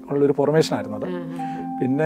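Speech over soft background music: a low held note runs throughout, and a higher held note comes in about halfway.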